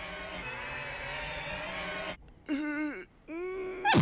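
A man's exaggerated wailing cry: one long, wavering wail, then after a short break two shorter wails that rise and fall.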